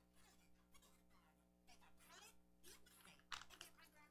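Near silence: faint rustles and light taps of hands handling pages and notes on a lectern, over a steady low room hum, with one sharper click a little after three seconds in.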